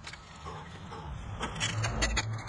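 A metal spade digging into soil and roots, with gritty scrapes and crackles that pick up to a few sharp clicks and a low thud near the end.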